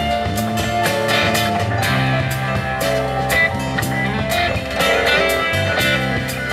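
Live band playing an instrumental passage: guitar over a drum kit, with regular cymbal strokes and sustained bass notes.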